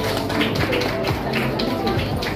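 Music with a steady percussive beat, about three beats a second.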